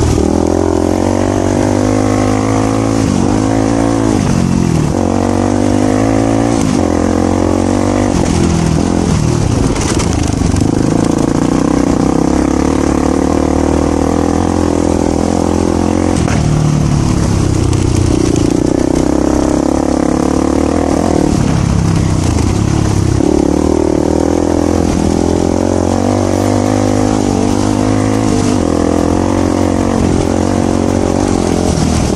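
Voge 300 Rally's single-cylinder engine under way on a dirt track, its revs rising and falling many times over the run.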